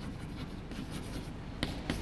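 Chalk writing on a blackboard: soft scratching strokes, then two sharp taps of the chalk against the board near the end.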